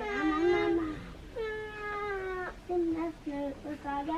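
Infant screaming and crying in a run of wailing cries, the longest held about a second before it breaks off.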